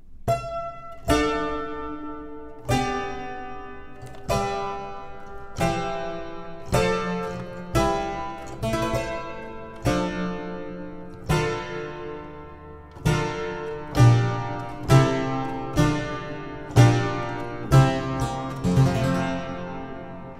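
Harpsichord-type plucked-string keyboard playing a two-handed baroque-style contrapuntal passage: a falling chord sequence with running figures over a moving bass, each note starting sharply and fading quickly.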